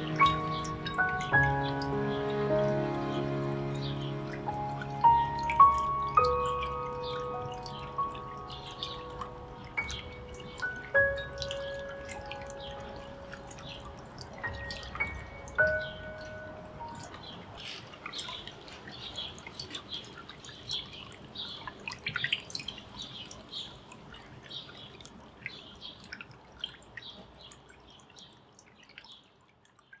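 Soft new-age background music of slow, sustained melodic notes that die away about halfway through, overlaid with scattered water-drop sounds that keep dripping until near the end.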